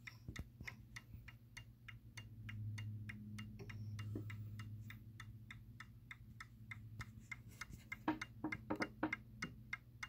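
Seth Thomas Fieldston-IW mantel clock's pendulum movement ticking steadily, heard up close, about four ticks a second. A few louder clicks come near the end.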